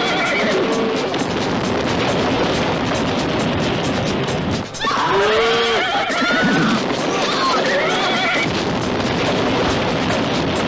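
Horses whinnying several times, the longest calls about halfway through, over a loud, steady rushing noise and film music.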